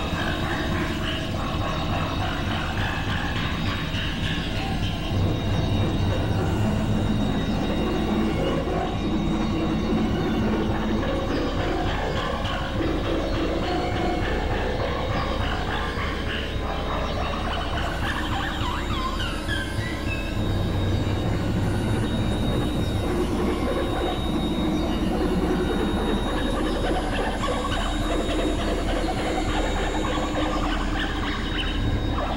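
Experimental electronic noise music built from synthesizer drones: a constant low hum under dense, shifting layers of held tones with an industrial, train-like rumble. A few short rising chirps come about two-thirds of the way through.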